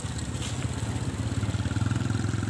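Small motorcycle engine running, a steady low drone with a fast even pulse.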